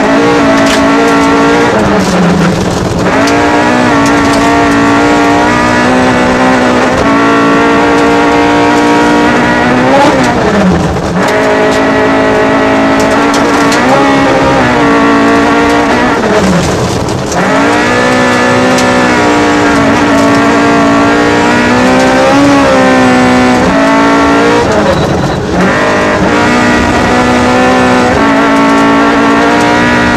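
Rally car engine heard from inside the cabin, held at high revs on a gravel stage. Four times the revs drop sharply and climb again.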